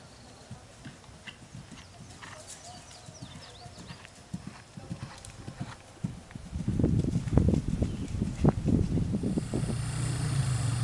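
Hoofbeats of a horse galloping on grass, faint at first and then loud and close as it passes from about six and a half seconds in. A steady low hum takes over near the end.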